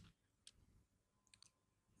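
Near silence with three faint computer mouse clicks: one about half a second in, then a quick pair a little later.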